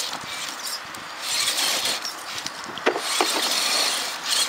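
Bogger RC rock crawler's electric drivetrain whirring in two bursts as it climbs a boulder, with its tyres scrabbling and a few sharp knocks on the rock about three seconds in.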